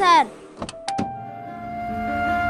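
A car door's latch gives a quick run of four sharp clicks about half a second in. Just after them, a held note of background music comes in.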